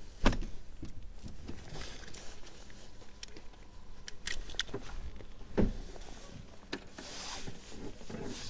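Scattered clicks and knocks with faint rustling, like handling noise from someone moving about in a parked microlight trike. The loudest knocks come just after the start and about five and a half seconds in.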